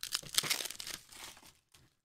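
Foil wrapper of a Panini Prizm retail basketball card pack crinkling and crackling as the pack is torn open and handled. There is a dense run of crackles for the first second and a half, then it dies away.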